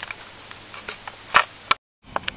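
A few faint ticks over quiet room noise, then two sharp clicks about a second and a half in, the first the louder. The sound then cuts off dead as the recording is stopped.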